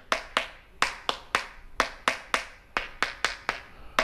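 A wooden stick tapping on patio floor tiles, quick sharp strikes about three or four a second. The tiles sound hollow because the mortar bed did not bond to the concrete slab beneath.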